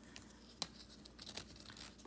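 Nylon NATO watch strap being pulled through between a watch's spring bars and case: faint rustling and scraping of the woven fabric, with one sharp click less than a second in.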